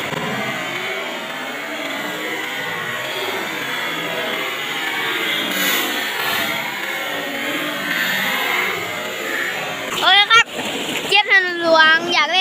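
Muddy water rushing and splashing through a shallow rocky channel, a steady, even wash of sound, as a swimmer is carried along in the current. About ten seconds in, a voice takes over.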